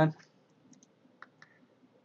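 A few faint, scattered clicks from a computer mouse being handled, after the end of a spoken word.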